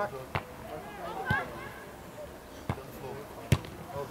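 A football being kicked on the pitch: four sharp knocks of boot on ball within the few seconds, the loudest near the end, with distant shouting from players and touchline.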